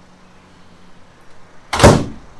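Over-the-range microwave door pushed shut, latching with one sudden loud clunk near the end.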